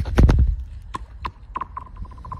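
Thin pond ice being struck: a heavy thud at the start, then a run of sharp knocks coming closer together, each ringing, with a clear high ringing tone from the ice setting in about a second and a half in.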